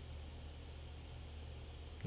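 Quiet room tone: a steady low hum under a faint even hiss, with nothing else happening.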